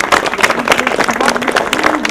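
A crowd applauding: many hands clapping together in a dense, even patter.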